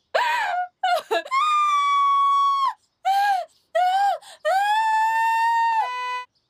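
A woman screaming and wailing in a run of high-pitched cries, two of them long and held at a steady pitch.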